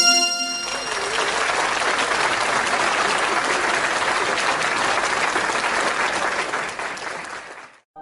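Applause: many hands clapping steadily, fading out and stopping just before the end. A short musical chime rings on into the first half-second.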